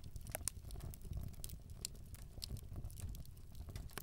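Fire crackling: irregular sharp pops and snaps over a low steady rumble.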